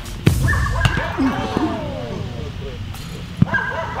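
A football kicked hard in a penalty, a sharp thud about a quarter second in, followed by drawn-out cries falling in pitch and another sharp knock near the end.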